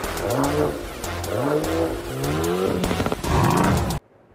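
Car engine revving in three rising sweeps about a second apart, growing louder near the end.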